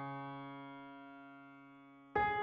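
A grand piano chord left to ring and fading away steadily; no new notes are struck.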